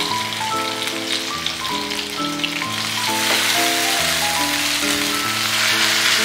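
Marinated chicken pieces shallow-frying in hot oil in a nonstick pan: a steady sizzle that grows a little louder about halfway through. Background music with held notes plays over it.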